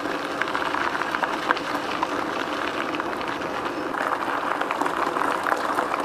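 E-bike tyres rolling over a gravel track: a steady crunching noise full of small crackles from the stones.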